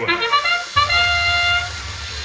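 Match-start sound of a FIRST Robotics Competition field played over the arena speakers: a brass-like fanfare of a few short notes ending in one long held note. A steady low hum starts about halfway through.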